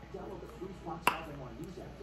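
Faint speech in the background, with a single sharp click about a second in.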